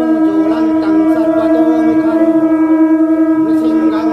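Conch shell (shankha) blown in one long, steady note, sounded to accompany the lamp-waving of a Hindu temple aarti.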